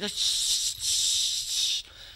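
A man's mouth-made hissing, rattling noise, a vocal imitation of keys being dropped. It lasts most of two seconds and stops shortly before the end.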